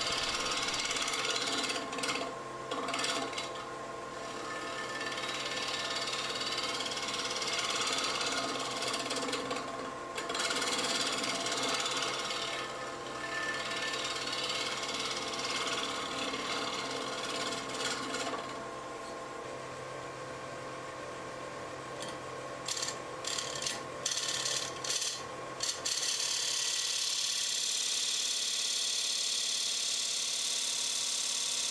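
Bowl gouge cutting a spinning monkeypod bowl blank on a wood lathe, a hiss that comes and goes as the tool is worked across the wood, over the steady hum of the lathe. Near the end the cutting gives way to a steadier, higher hiss.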